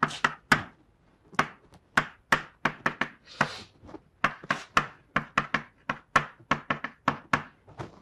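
Chalk tapping on a blackboard while an equation is written: a quick, irregular run of sharp clicks, about four a second.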